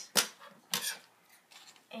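Scissors snipping twice through a folded paper coffee filter, two short crisp cuts about half a second apart.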